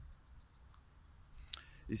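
A short pause in a man's talk, with faint low rumble. A single sharp click comes about one and a half seconds in, then his voice starts again at the very end.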